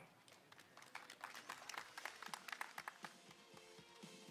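Very faint, scattered clapping from an outdoor audience, with soft instrumental music beginning near the end.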